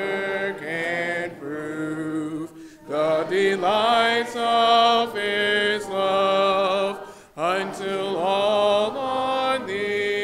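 A congregation singing a hymn a cappella, in held notes and phrases. The singing breaks briefly for breath about three seconds in and again about seven seconds in.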